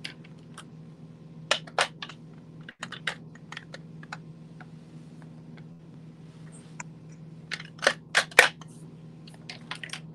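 Irregular small clicks and taps, typing-like, coming in short clusters about a second and a half in, around three seconds, and again near eight seconds, over a steady low electrical hum.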